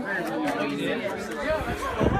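Several people talking at once in the background, with a low muffled bump near the end.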